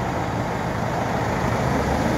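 Box truck's diesel engine idling steadily, a low even hum.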